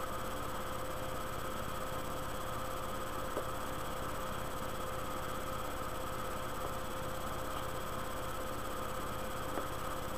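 Steady electrical hiss and hum from a low-grade webcam microphone, unchanging throughout, with two faint clicks about three and a half seconds in and near the end.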